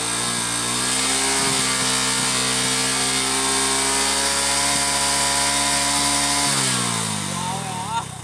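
Hero Glamour motorcycle's single-cylinder engine revved up under throttle and held at steady high revs for about five seconds, its exhaust blowing up a balloon fitted over the silencer. Near the end the throttle is let go and the revs fall away.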